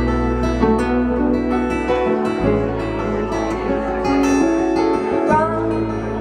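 Instrumental passage of a live acoustic band: two acoustic guitars picked and strummed over electric bass. The bass note changes about two seconds in and again about five seconds in.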